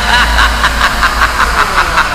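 Hardstyle dance music with a fast, steady pounding beat and heavy bass, overlaid with a sampled voice chuckling in short gliding bursts.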